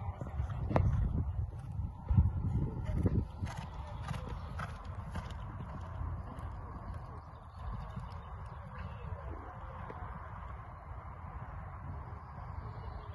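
A horse cantering on a sand arena, its hoofbeats thudding on the soft footing. The thuds are loudest in the first three seconds or so, then grow quieter as the horse moves away.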